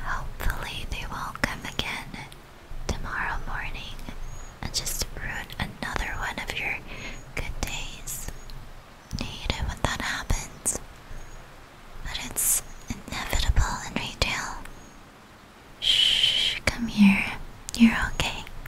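A woman whispering in short phrases separated by pauses, with a brief hiss near the end.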